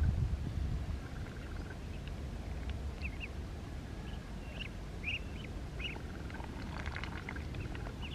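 Muscovy ducklings peeping in short, high chirps, often in pairs, while they crowd in to feed, over a low rumble that is heavier in the first second. A brief crackle comes about seven seconds in.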